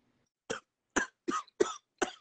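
A man coughing: four short, sharp coughs in quick succession, starting about half a second in.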